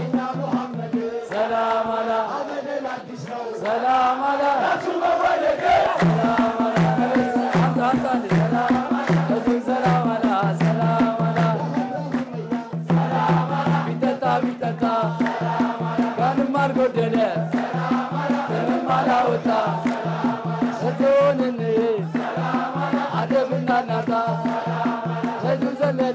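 Ethiopian menzuma-style Islamic chanting: a lead voice singing through a microphone with men chanting along, over a steady low pulse about two to three times a second that sets in about six seconds in.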